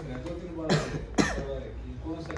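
A man coughing twice in quick succession, two short sharp bursts about half a second apart, over low voices.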